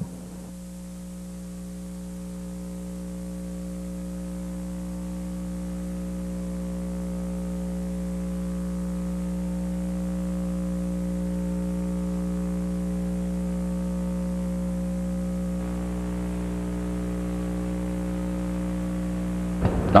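Steady electrical hum made of several fixed tones, growing gradually louder over the first ten seconds or so and then holding level.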